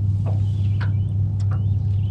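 Electric trolling motor running with a steady low hum, with a few faint clicks on top.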